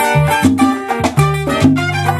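Live Cuban son band playing an instrumental passage: trumpets and strummed acoustic guitar over congas and a bass line, in a steady salsa dance rhythm.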